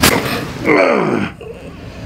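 A sudden crack as the chiropractor thrusts through a neck adjustment, then the patient lets out a pained groan that falls in pitch, about a second in.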